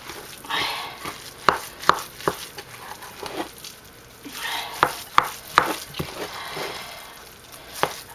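A spoon stirring a thick, wet tofu and mayonnaise mixture in a glass bowl. It makes soft squelching scrapes, with sharp clicks of the spoon against the glass in two runs of three, the first about a second and a half in and the second about five seconds in.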